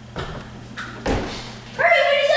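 Footfalls knocking on a wooden stage floor, then near the end a child's high voice breaks into a long, loud, drawn-out cry.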